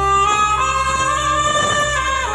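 Saxophone playing a melody of long held notes that slide from one pitch to the next, amplified through a microphone, over a steady low drone.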